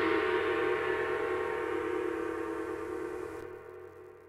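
A deep gong-like ringing tone with many overtones, struck just before, dying away slowly under the logo sting; its higher overtones drop out near the end.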